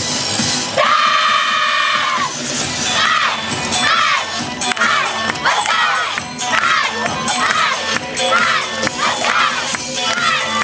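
Yosakoi dance music playing while a troupe of women dancers shout calls in unison: one long held shout about a second in, then a string of short rhythmic shouts about twice a second.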